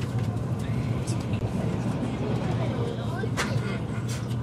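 Running noise of an Odakyu 30000 series EXE Romancecar heard inside the passenger cabin: a steady low rumble of the train moving along the track, with one sharp click near the end.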